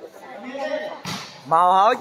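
A volleyball struck by hand about a second in, a sharp smack that rings briefly in the hall. It is followed by a loud shouting voice rising in pitch during the last half second.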